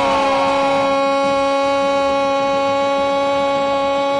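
A radio football commentator's drawn-out goal cry, holding the vowel of "gol" on one steady pitch.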